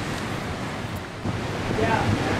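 Strong wind buffeting the microphone, over the steady noise of ocean surf breaking below.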